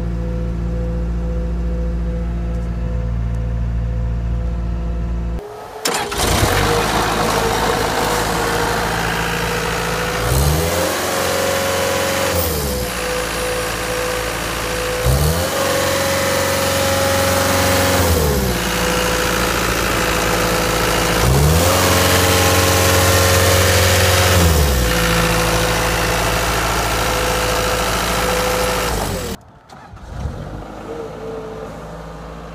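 Caterpillar 246C skid steer's diesel engine running, first idling steadily. After a sudden break about five seconds in, it is heard louder at the open engine bay and revved up and back down three times, each rev held for two or three seconds.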